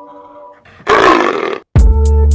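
A single short, gruff roar lasting under a second, about a second in; near the end, music with a heavy bass beat starts.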